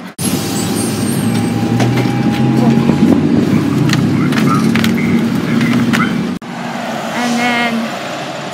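City bus engine idling at a stop, a loud steady hum with a few clicks and knocks over it. It cuts off suddenly about six seconds in, leaving quieter outdoor sound with a brief higher warbling sound near the end.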